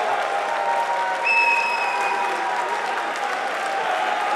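Arena crowd applauding and cheering a knockout, with a shrill whistle held for about a second starting just over a second in.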